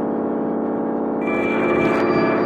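Experimental synthesizer drone from the Surge XT software synth: a dense, steady cluster of many sustained tones, with a brighter, higher layer entering a little over a second in.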